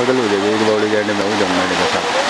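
Water pouring down a concrete fountain chute into a pool, a steady rush. A long, drawn-out voice is held over it and stops near the end.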